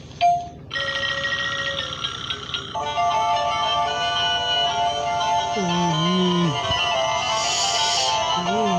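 An animated Gemmy toy plays a tinny electronic tune through its small speaker. A click comes just after the start, a thin tune begins about a second in, and fuller music sounds from about three seconds. A brief low hum comes about six seconds in.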